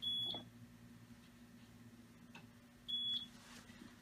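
Two short, high electronic beeps from the HistoPro 414 linear stainer's keypad as its buttons are pressed to set the station time. The first comes right at the start and the second about three seconds later.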